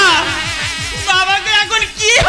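Electronic sound effect: a buzzing, wobbling tone over a fast, even low pulse of about ten beats a second. The wavering upper tones grow stronger and climb about a second in.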